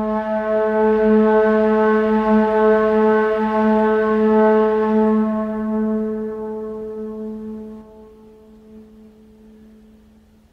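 A single sustained low note with a stack of overtones, held steady for about five seconds and then slowly fading away, nearly gone by the end.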